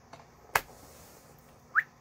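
A single sharp finger snap, followed about a second later by a short rising squeak.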